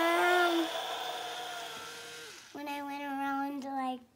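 A young child's voice making long, held vowel sounds, like a drawn-out "ummm" while thinking of an answer: one at the start and a longer one in the second half, with a faint steady hum between them.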